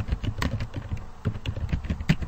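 Typing on a computer keyboard: a quick, uneven run of key clicks, about a dozen in two seconds.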